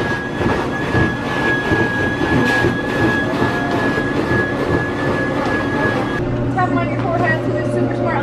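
Plush-toy stuffing machine running as a stuffed dog is filled: a steady high whine over a blowing rush that cuts off about six seconds in.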